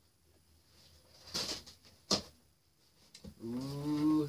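Hands working at a large taped cardboard box: a short rustle, then a sharp click. Near the end comes a short, strained hum or groan of effort from the woman bending over the heavy box.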